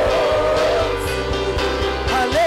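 Live worship music with a sustained held chord over a bass beat, a pause between sung lines.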